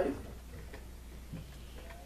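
Quiet room tone in a pause between spoken phrases: a steady low hum, with a faint click about a second in.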